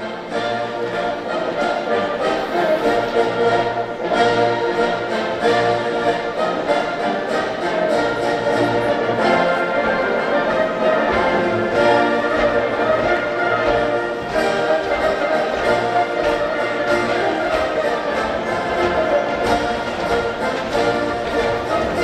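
Military march played by a brass band, with held brass chords over a steady beat.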